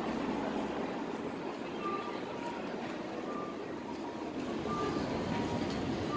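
Street noise of a crowd walking across a busy city crossing, with traffic running underneath. A pedestrian crossing's audible walk signal beeps through it in two-note pairs, high then low, repeating about every second and a half.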